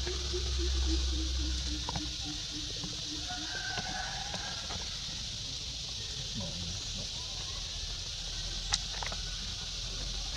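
Steady high-pitched drone of insects, with a sharp click near the end.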